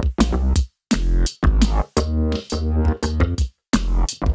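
Electronic music playback: a programmed drum-machine beat with a synthesized bassline from ZynAddSubFX. The bass plays short, deep notes in a choppy rhythm, each note starting with a quick falling blip, with sharp drum hits on top and brief dead stops between phrases.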